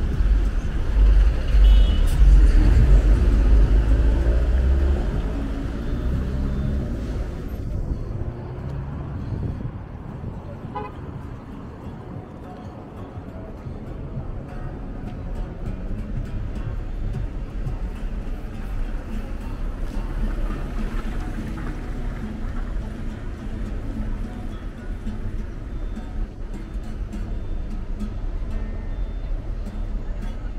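City street traffic at an intersection: a heavy vehicle's engine rumbles close by for the first several seconds, then fades to a quieter, steady hum of passing cars.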